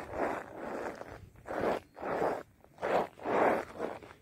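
Footsteps crunching on icy snow at a steady walking pace, about six steps.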